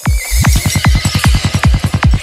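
Psytrance beat coming back in at once after a break: a steady kick drum with a fast rolling bassline filling the gaps between the beats, and a wavering synth tone above.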